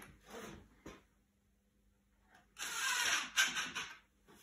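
Cordless drill driving a 4 x 30 mm screw up into the underside of a wooden floating shelf: a raspy burst of just over a second, starting a little after halfway.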